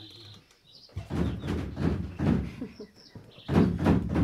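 Heavy repeated pounding on a door, starting about a second in and coming in two spells, the second one louder. Faint birdsong chirps sound behind it.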